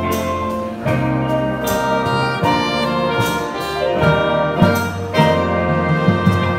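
Live jazz big band playing, its saxophone and trumpet sections sounding together in sustained chords that change about every second.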